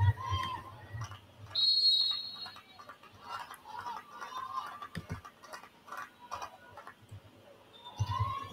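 Faint, muffled talking, with one loud, steady, high-pitched tone lasting about a second near the start.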